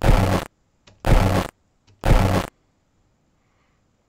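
A short recorded sound fragment played back three times, about a second apart: each time a harsh, buzzy half-second burst with a voice-like pitch underneath. An instrumental transcommunication experimenter hears it as the word "path", which he takes for a spirit-voice imprint.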